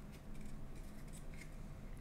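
Faint sliding and rustling of baseball trading cards as they are flipped one behind another in the hands, with a few light scrapes of card against card.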